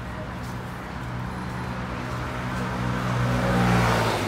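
A motor vehicle going by on the road alongside, its engine hum and road noise growing louder and at their loudest near the end.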